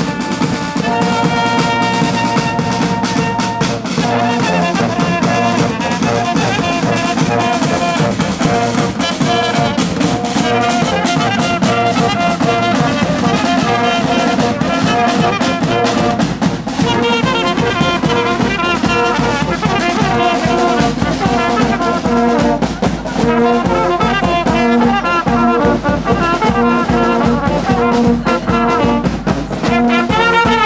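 Bulgarian folk brass band playing live: trumpets and brass horns over drums. It opens on long held notes, then moves into a fast, ornamented melody over a steady beat.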